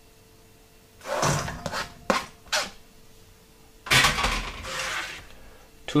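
Chopped onion pieces tipped off a plastic chopping board and dropping into a stainless steel mixing bowl, in two rustling rushes about a second in and about four seconds in, with a couple of sharp taps between; the second rush is the longer and louder.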